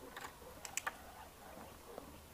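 A quick run of sharp clicks, the loudest pair just under a second in, with a few fainter ticks after.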